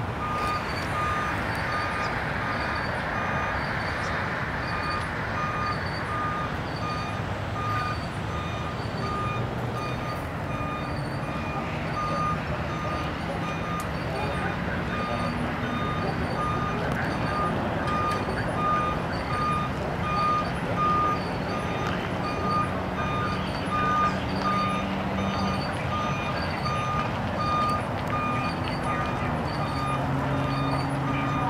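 A truck's reversing alarm beeping steadily, about once a second, over a diesel engine running.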